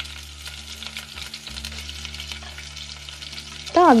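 Oil sizzling with fine, steady crackles in a pot on a gas stove as a seasoning fries, over a low hum.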